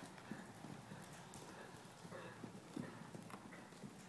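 Faint hoofbeats of a ridden horse moving over soft dirt arena footing: dull, irregular thuds, a few to the second.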